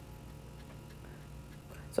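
Faint ticking taps of a stylus on a tablet screen, over a low steady background hum.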